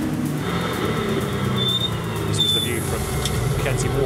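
Engines of Ginetta G40 race cars running hard as a pack races through a corner, with a couple of brief high-pitched squeals near the middle.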